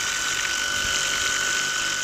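Gloria Multijet 18V battery medium-pressure cleaner running: its pump motor gives a steady high whine, over the hiss of a narrow water jet splashing into the pool.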